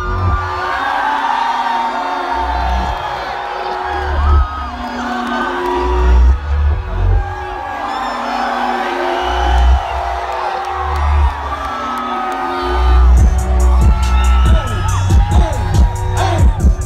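Loud music through a concert PA with heavy bass hits, the bass becoming continuous near the end, while the crowd around whoops and cheers.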